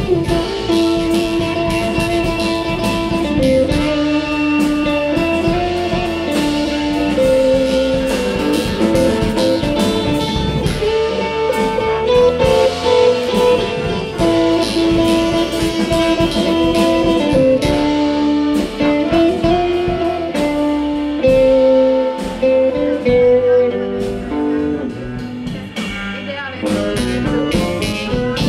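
A live band playing a song: red hollow-body electric guitar, violin and drum kit, with held melody notes moving step by step over the beat.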